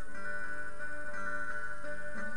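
Acoustic guitar played solo, single picked notes ringing one after another over sustained strings, with no singing.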